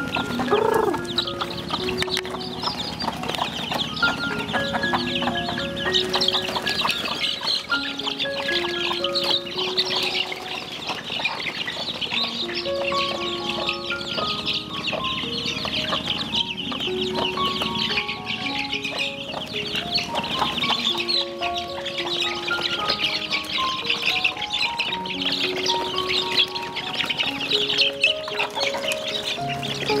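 A flock of young chicks peeping continuously, many short high chirps overlapping. Under it runs background music, a simple melody of held notes.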